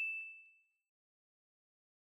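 A single bright bell ding, a timer chime marking the end of a quiz countdown, ringing out and fading away within about half a second.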